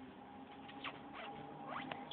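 Faint crackle and rustle of a crusty bread roll being pulled apart by hand, a few small crackles in the second half.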